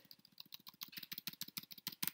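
Rapid, even run of small clicks from computer controls as a document page is moved down.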